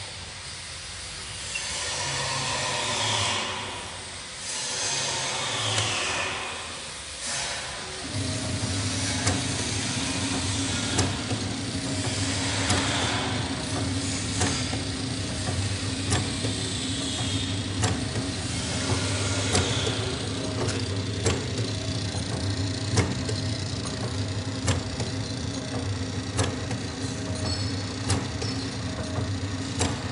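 Small automatic packaging machine running, starting about eight seconds in: a steady motor hum with a sharp click repeating about every 1.7 seconds as it cycles. Before it starts there is irregular hissing.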